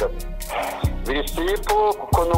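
Background hip-hop music: a rapped vocal line over a beat, with a kick drum hit a little under a second in.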